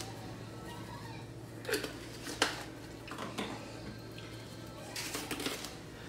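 A small spice jar shaken and handled over a saucepan: a few light clicks and taps, with a short cluster of them near the end, over a steady low hum.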